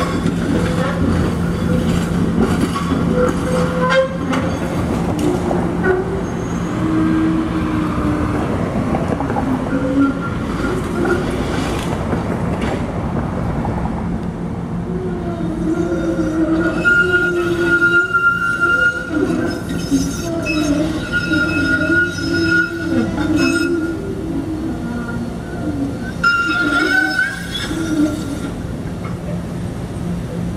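SEPTA Kawasaki streetcar running through the curved track with a steady hum. In the second half, its wheels squeal on the curved rail in wavering, stop-and-start tones.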